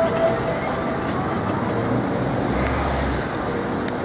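City street traffic: cars running along the road, a steady wash of engine and tyre noise.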